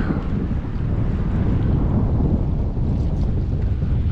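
Wind buffeting the microphone, a steady low rumble, over choppy river water lapping close by.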